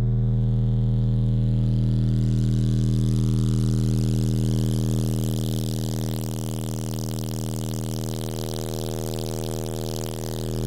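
Twelve-inch Timpano TPT-3500 car subwoofers playing a loud, steady bass test tone at full power, the amplifier being pushed into clipping. The tone eases slightly about halfway through.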